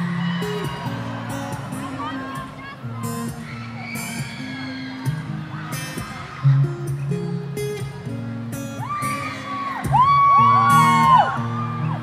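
Acoustic guitar strummed live, its chords changing every second or so, with a crowd's high screams and whoops over it that swell to their loudest near the end.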